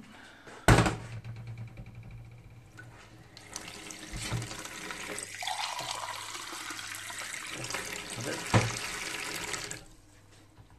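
A kitchen tap runs water into a ceramic mug over a stainless steel sink. The pitch of the filling rises as the mug fills, and the water stops suddenly near the end. A sharp knock comes about a second in, and a lighter one shortly before the water stops.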